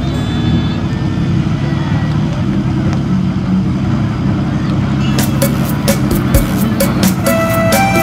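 Robinson R44 helicopter's six-cylinder Lycoming piston engine and rotor running steadily on the ground. About five seconds in, music with a steady beat comes in over it.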